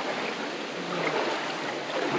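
Steady rushing of a shallow river flowing over rocks.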